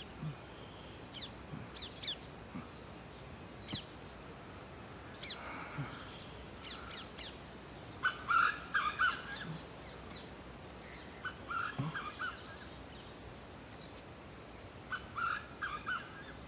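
Crows cawing in three short runs of calls, the loudest about halfway in, with small birds chirping throughout over a steady background hiss.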